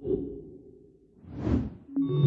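Quiz-game leaderboard transition sound effects: a sudden hit that fades, then a whoosh that swells and dies away about a second and a half in.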